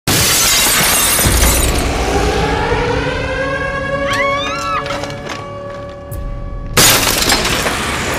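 Horror-trailer sound design: glass shattering with a low boom in the first second or so, then a rising sustained music drone with a brief gliding melodic line in the middle. A sudden loud hit cuts in near the end.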